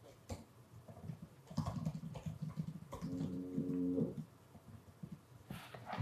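Quiet typing on a computer keyboard as text is entered, with a short steady low hum lasting about a second around three seconds in.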